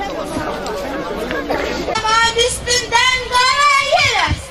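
A crowd of children chattering and murmuring; about halfway through, one child's high voice comes in clearly above them.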